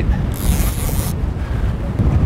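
Strong wind buffeting the microphone on an open boat at sea, with the sea underneath. A short, high hiss lasting under a second comes a third of a second in.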